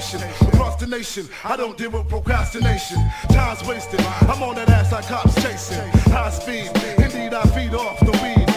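Boom bap hip hop track: rapping over a steady drum beat with a deep bass line.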